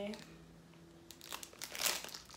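Crinkly plastic retail packaging of a skipping rope rustling as it is handled, a few quick crackles in the second half, loudest near the end.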